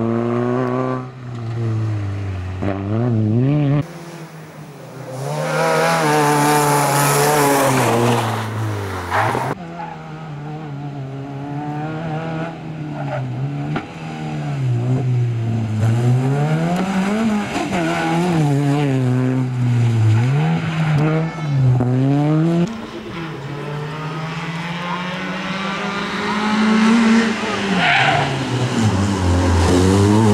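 Peugeot 206 rally car engine revving hard, its pitch climbing and dropping again and again through gear changes and lifts for corners, with tyres scrabbling on loose gravel.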